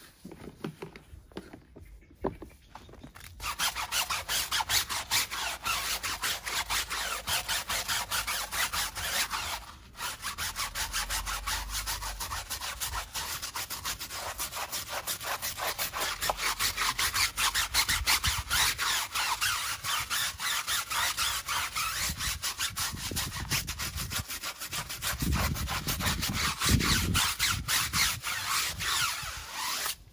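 Stiff-bristled tyre brush scrubbing a soapy, foam-covered tyre sidewall in fast back-and-forth strokes. The scrubbing starts about three seconds in and stops briefly around ten seconds.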